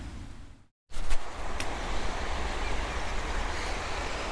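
Steady rushing wind noise on the microphone outdoors, heavy at the low end, with a couple of faint clicks. It comes in just under a second in, after a brief dead silence where the shot changes.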